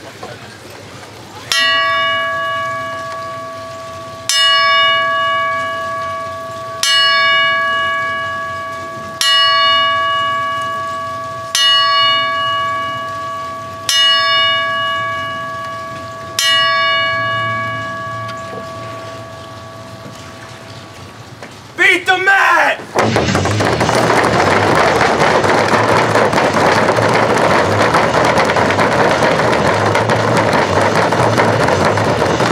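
Wrestling ring bell struck seven times, evenly spaced, each strike ringing out and fading: a memorial bell salute. After a pause, a loud steady noise of many hands clapping and slapping starts.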